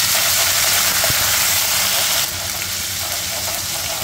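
Oil sizzling loudly in a kadai as ginger-garlic paste and finely chopped aromatics fry towards golden brown for a baghar (tadka), a steady dense hiss that eases a little past halfway.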